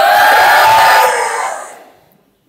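A crowd shouting together in one long, loud cry that rises slightly and then falls in pitch, fading away by the end.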